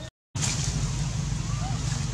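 Outdoor background noise: a steady low rumble with a few faint short chirps. The sound drops out for a moment just after the start, then comes back louder.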